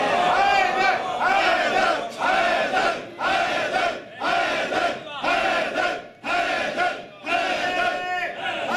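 A congregation chanting together in unison, a short phrase repeated about once a second with brief breaks between.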